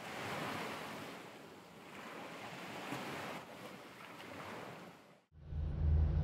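Surf-like rushing noise that swells and eases in slow surges, cutting off suddenly about five seconds in. A low steady engine hum then begins.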